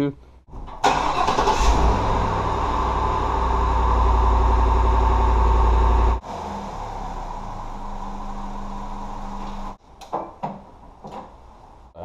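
A car engine starts with a sudden catch about a second in and runs at a loud fast idle. It then settles, after an abrupt drop, into a quieter steady idle that cuts off a few seconds before the end.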